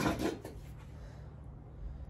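Quiet room tone with a steady low hum, after a brief rustling noise right at the start.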